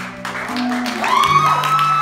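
Audience clapping with a long rising cheer about a second in, held after it rises. Under it plays a sustained instrumental chord.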